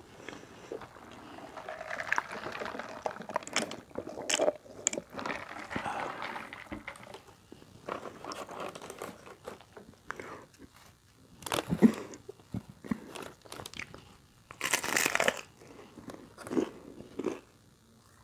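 Close-up eating sounds: a fried chalupa shell being handled and pulled apart with soft rustling and small crackles, then crunchy bites and chewing, with the loudest crunches in the second half.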